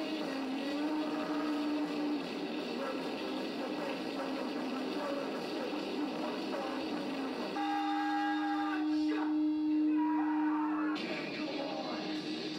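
A live rock band playing, with a long held note ringing steadily for about three seconds in the second half, after which the band carries on.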